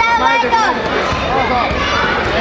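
Spectators shouting over crowd chatter, with one loud, drawn-out shout in the first moment.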